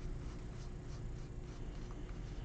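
Stiff trading cards being flipped through by hand: a faint rustle of card edges sliding against each other, with scattered light ticks, over a low steady hum.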